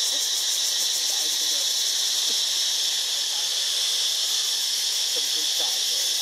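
A steady, high-pitched chorus of insects buzzing with a fast even pulse, with faint distant voices underneath.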